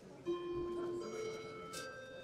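Faint music: several sustained notes held together, one coming in just after the start and more joining about a second in.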